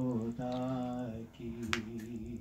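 A man chanting devotional verse in a slow, melodic recitation, holding long notes, with a short break a little after the first second. A single sharp click sounds near the end.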